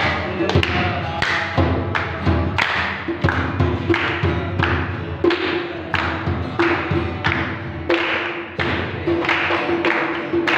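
A group of people clapping hands together in a steady beat, about three claps every two seconds, to a song with acoustic guitar and voices.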